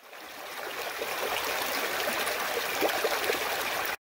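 A small rocky stream running over stones: a steady rush of water with little gurgles. It fades in over the first second and cuts off suddenly at the end.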